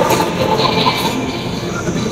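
Indistinct background noise with faint, scattered voices, no single clear sound standing out.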